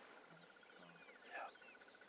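Faint wild birdsong: a few short, high, thin whistles and chirps, the loudest just under a second in, over a steady fast-pulsing trill.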